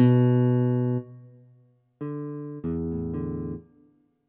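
Yamaha PSR-270 keyboard playing chords through its built-in speakers. A chord is held and fades over about a second and a half, then, after a short pause, two more chords follow in quick succession and are released before the end.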